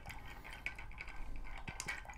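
Bar spoon stirring ice cubes in a glass mixing beaker: faint, quick, irregular clicks of ice and spoon against the glass as the cocktail is chilled and diluted.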